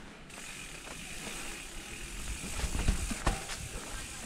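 Mountain bike's rear freehub ratcheting steadily as the bike coasts down a dirt trail, with tyre noise. The bike thuds over bumps between about two and a half and three seconds in, then gives one sharp knock.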